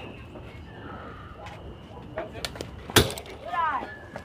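Baseball bat striking a pitched ball: one sharp crack with a short ring about three seconds in, followed by a brief shout from the stands.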